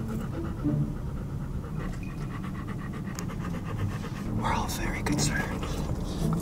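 A dog panting close to the microphone in a steady, quick rhythm inside a car.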